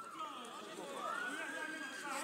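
Several voices calling out over one another across an outdoor football pitch, with one long drawn-out call in the second half.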